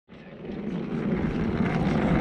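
Steady low rumble and hiss of outdoor background noise in a parking lot, with no distinct events; it fades in over the first half second.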